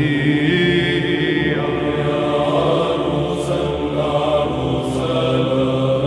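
Orthodox Byzantine-style chant: a sung melody of long, ornamented notes held over a steady low drone.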